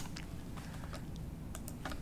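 Computer keyboard typing: a few scattered, light keystrokes over a low steady background hum.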